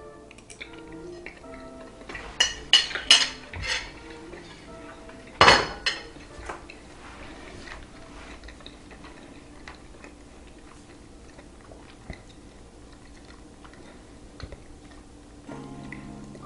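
A man chewing a bite of roast turkey, with a few clicks of a metal fork against a plate in the first six seconds, the loudest about five and a half seconds in. Soft background music with held notes plays throughout.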